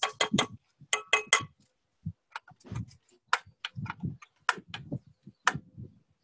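Metal spoon clicking and clinking against a small jar as it scoops, a string of irregular light taps, a few with a brief ring.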